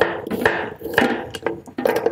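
Kitchen knife chopping on a wooden cutting board: several sharp, irregularly spaced knocks.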